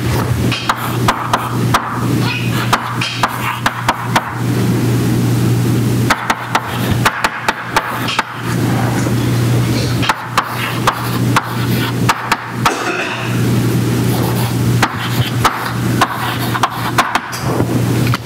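Chalk writing on a blackboard: irregular sharp taps and scrapes of the chalk stick, over a steady low hum.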